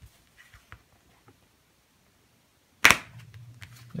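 A gold foil playing card bent between the fingers and snapped, giving one sharp, loud snap nearly three seconds in, after a few faint clicks of the cards being handled.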